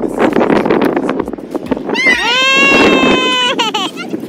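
A boy's long, high-pitched yell, starting about halfway through and held steady for about a second and a half before wavering and breaking off. Before it, irregular rustling noise.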